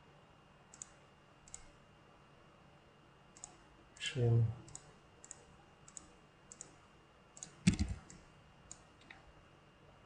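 Computer mouse clicks, about a dozen short sharp ones spaced irregularly, with a louder thump about three-quarters of the way through.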